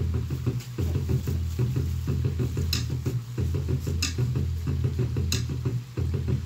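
Fast Tahitian-style drum music playing through a portable speaker: a quick, even beat over a deep bass, with a sharp accent every second and a half or so in the second half.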